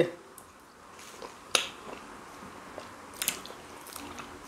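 Close-up mouth sounds of eating okra soup and fufu: quiet wet chewing, with a sharp lip smack about a second and a half in and another just after three seconds.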